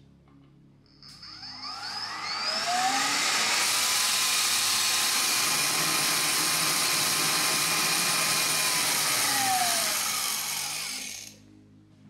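IKAWA Home coffee roaster's blower spinning up with a rising whine, then blowing air hard through the roast chamber with a loud, steady rush as it ejects the roasted beans into the collection jar. It winds down with a falling whine near the end.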